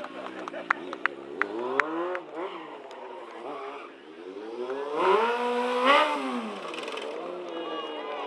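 Sport motorcycle engine revving up and down as the bike is ridden through stunts, with its loudest, highest rev about five to six seconds in before the revs fall away.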